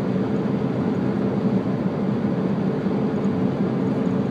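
Steady road and engine noise inside the cabin of a moving car, with an even low drone.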